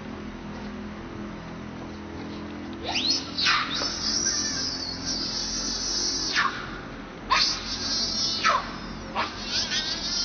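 Baby macaque crying in distress: a run of long, high-pitched cries that each fall in pitch at the end, starting about three seconds in and repeating several times.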